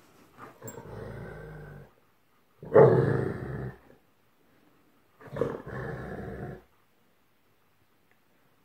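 German Shepherds growling in play, three long growls a second or so apart, the middle one the loudest.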